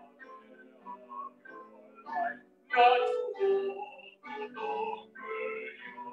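A man singing a solo, with accompaniment, heard over a video call's compressed audio.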